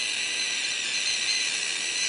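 A juvenile leopard gecko screaming: one long, high-pitched screech. It is a defensive call, made to scare off a predator.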